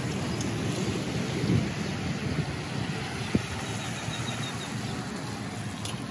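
Toyota Tundra pickup truck driving past on wet asphalt, its tyres hissing on the wet surface over a low engine rumble, swelling about a second and a half in. A single short knock about three seconds in.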